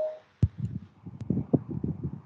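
A single sharp click about half a second in, followed by irregular low thumps and a few faint ticks.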